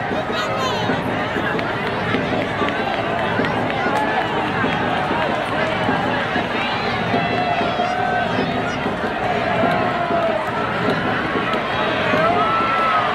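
A large outdoor crowd: many voices talking and calling out at once, a steady babble with no single speaker standing out.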